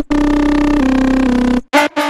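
A Serum software synthesizer preset playing one sustained, bright note that steps down in pitch twice. It cuts off about a second and a half in, and a new short note starts near the end.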